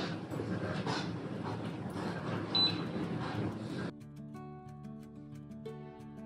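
A spatula stirring dal as it simmers in a frying pan: a steady hiss with a few soft scrapes, and a short high beep about halfway. About four seconds in it cuts abruptly to soft background music.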